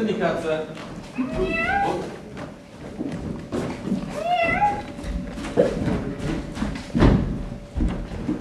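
A performer's voice giving two drawn-out, rising cat-like meows, about a second in and again about four seconds in, with a loud thump near the end.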